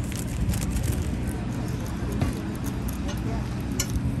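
A passenger ferry's engines running under way, a steady low drone, with people talking on deck.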